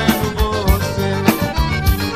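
Live forró band: a piano accordion plays a melodic instrumental passage over a steady low drum beat.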